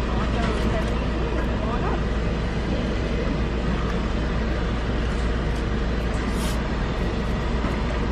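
Steady low rumble of a car idling, heard from inside the cabin, with faint voices in the background.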